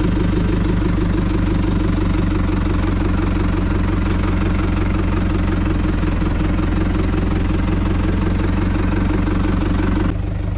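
Tractor engine running at a steady, even speed while it works a Hardi sprayer.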